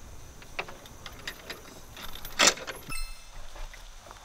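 Scattered knocks and clatter of wooden boards being handled on a pickup truck's wooden bed, with the loudest knock about two and a half seconds in.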